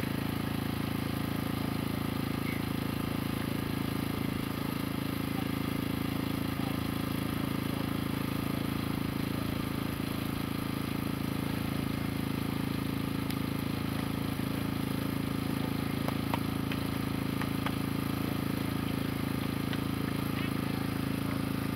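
A steady, unchanging low drone, like an engine idling, with a few faint ticks near the end.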